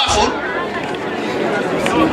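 A man's voice amplified through a microphone, mixed with the chatter of a seated crowd, and a brief low thump at the start.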